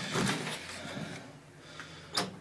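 A door being opened, with handling noise in the first half second, then quieter rustling.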